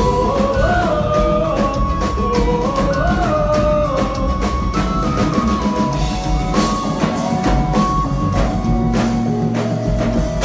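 Live sertanejo band music played loud through the PA: a sung melody over drums, guitars and accordion, with a steady beat. A held low bass note comes in near the end.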